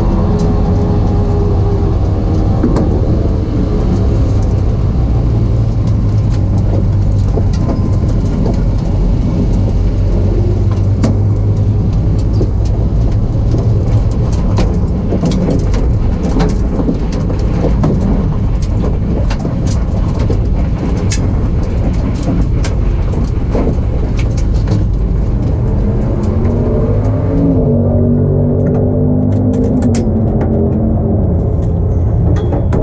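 A Pro Mod 1967 Mustang's race engine running at low speed, heard loud from inside the open cockpit. Its note drops in the first few seconds and shifts up and down again near the end.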